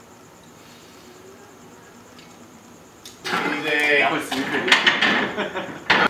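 Low background for about three seconds, then loud yelling from men, broken by sharp metallic clanks of a loaded barbell and its plates.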